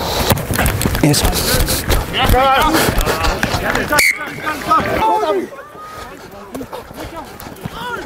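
Men's voices over a referee's microphone, with rustling and knocks from movement and wind on the mic. The sound breaks off abruptly about four seconds in, and quieter talk follows.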